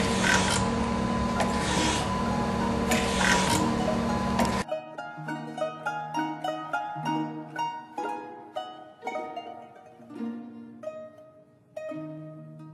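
ACER AGS surface grinder running: a steady hum and whine, with a louder hiss swelling about every one and a half seconds. After about four and a half seconds it cuts off abruptly and light plucked-string music takes over.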